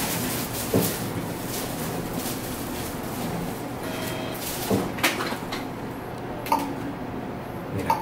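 A few scattered clicks and knocks, with a short electronic beep about four seconds in, from the ultrasound scanner's controls as the scan mode is changed, over a steady room noise.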